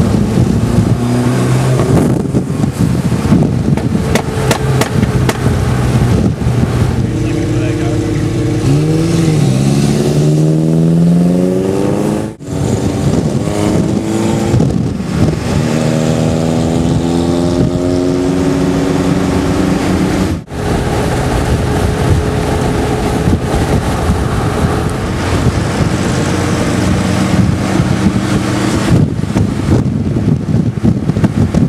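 Holden Gemini sedans driving close by in a convoy, their engines running and accelerating, pitch rising and falling through the gears over steady road noise. The sound breaks off sharply twice, about twelve and twenty seconds in.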